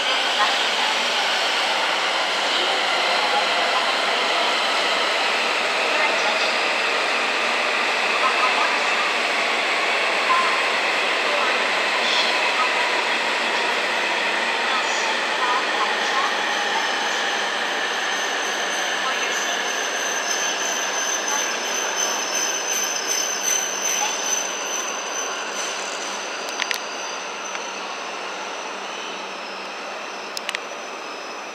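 E7 series Shinkansen train pulling into the platform, its running noise and motor whine slowly falling in pitch and fading as it slows. A thin high squeal joins in around the middle.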